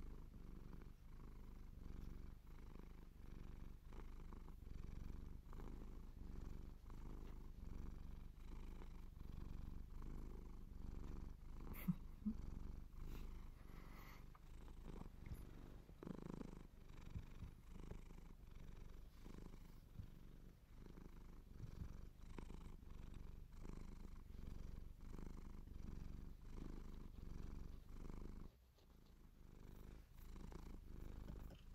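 Domestic cat purring steadily, close to the microphone, swelling and fading in a regular rhythm about once a second. A brief sharp click about twelve seconds in is the loudest moment, and the purr briefly drops away near the end.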